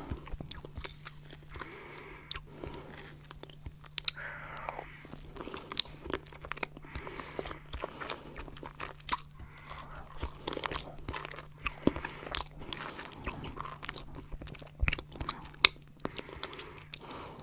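Close-miked mouth sounds of eating stracciatella mousse pudding from a spoon: wet lip smacks and soft chewing with slight crunches from the chocolate flakes, and many sharp clicks. A faint steady low hum underlies it.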